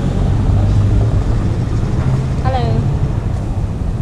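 Steady low rumble of wind buffeting the camera microphone outdoors, with a brief voice about two and a half seconds in.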